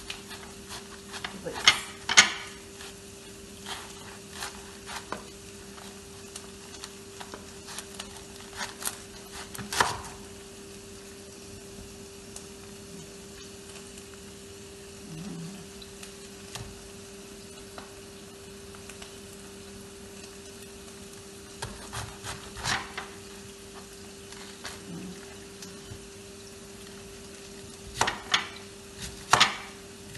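A kitchen knife cuts a head of cabbage on a plastic cutting board, with a few sharp knocks of the blade on the board about two seconds in, around ten seconds, at about twenty-three seconds and near the end. Under it run a steady hum and the faint sizzle of onions frying in oil.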